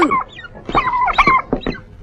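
A domestic turkey gobbling: a brief call just after the start, then a longer one about a second in.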